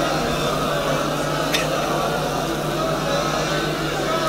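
Steady hum of a public-address system with faint, indistinct voices from a gathering, and a single click about a second and a half in.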